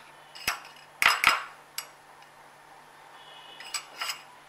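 A metal spoon clinking against a small glass bowl of besan batter while a skewer is coated: a few sharp separate clinks, the loudest pair about a second in and a short ringing cluster near the end.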